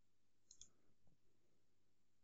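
A pair of faint computer mouse clicks about half a second in, followed by a couple of soft knocks, over near-silent room tone.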